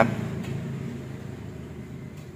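A low, steady background rumble with no distinct event, fading slightly.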